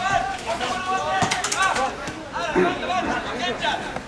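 Several people talking close by, their voices overlapping, with a brief run of sharp clicks about one and a half seconds in.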